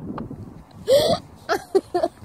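A person's short vocal outbursts: a loud yelp rising in pitch about a second in, then a few clipped voice sounds near the end. Quick crunching footsteps in snow are heard at the start.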